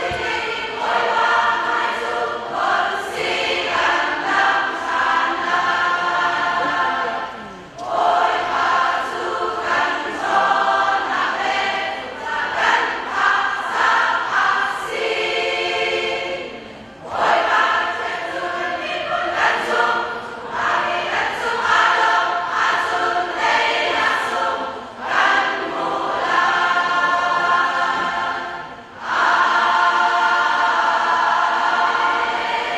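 Large women's choir singing a hymn in long sustained phrases, with brief breaks between phrases about every nine seconds.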